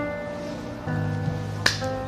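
Soft background music with sustained chords, and a single sharp click of a coin toss about one and a half seconds in.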